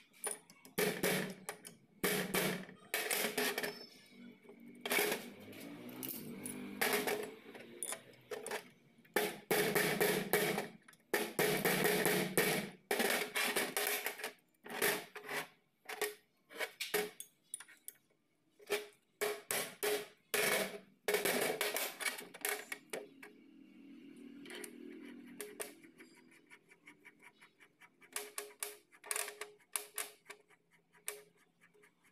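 Irregular metal clinks, knocks and scraping of a greased roller bearing and steel shaft being handled and fitted into a steel housing block.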